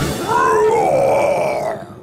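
A voice roaring "Roar!" for a cartoon Tyrannosaurus rex: one long growled call that rises and then falls in pitch, fading out near the end.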